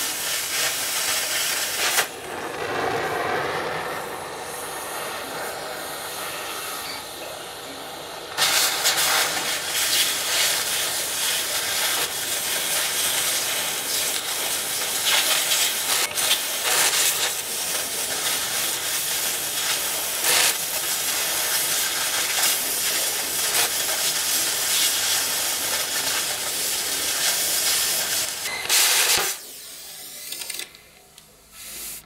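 Oxy-fuel cutting torch cutting through a steel plate, a loud steady hiss. The hiss drops quieter from about two seconds in to about eight seconds in, comes back at full strength, and stops suddenly just before the end.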